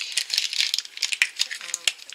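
Crinkling of a crumpled wrapper being pulled out of an opened plastic toy egg, with quick clicks and rattles from the plastic egg halves.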